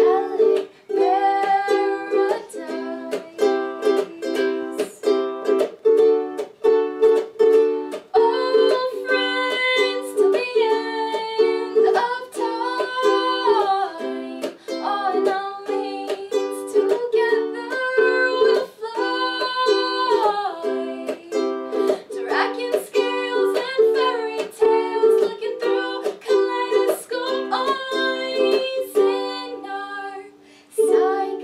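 A ukulele strummed in a steady rhythm, with a woman singing a melody over it.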